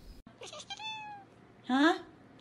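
A tabby kitten meowing: a faint, short falling call about a second in, then a louder rising meow near the end.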